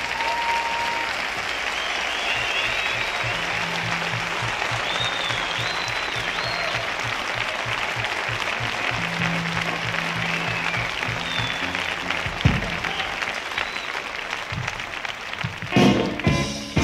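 Concert audience applauding with whistles, a low note repeating quickly underneath for several seconds. Just before the end the band comes in loudly with the next song.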